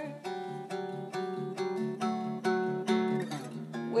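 Acoustic guitar played alone, chords picked in an even rhythm of about two to three strokes a second.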